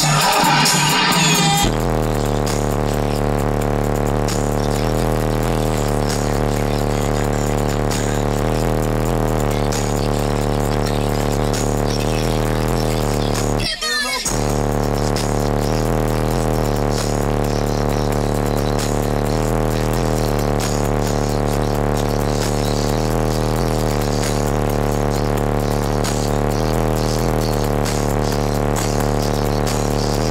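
Music with a heavy, steady bass line played loud on a car stereo with a subwoofer, heard inside the car. It cuts out briefly about fourteen seconds in.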